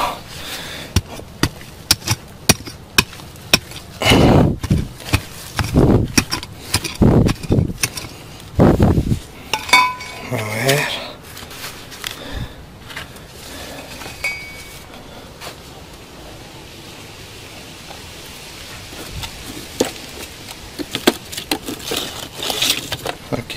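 Digging by hand in stony soil: a string of sharp clicks and knocks of a tool against rock and dirt, with a few longer scraping strokes a few seconds in. The knocking thins out in the later part.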